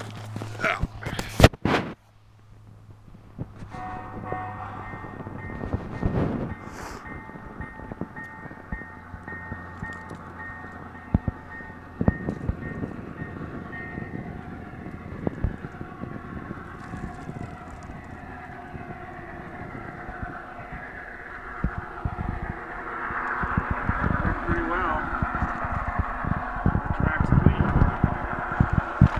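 G scale model diesel locomotive running on snow-covered track, its electric motor and gearing giving a steady whine with scattered crunching and clicks. The sound grows louder near the end as the train comes closer.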